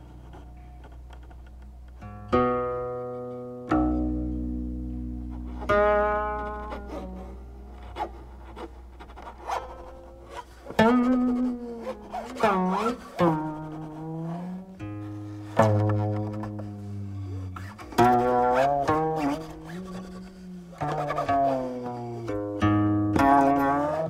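Solo guqin strung with silk strings: single plucked notes ring out and fade, after a quiet opening moment. From about halfway through, several notes slide and waver in pitch as the stopping hand glides along the string.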